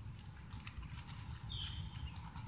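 Steady, high, continuous chorus of crickets or similar insects, with a low rumble on the microphone beneath it. A brief high note, like a short bird chirp, comes about a second and a half in.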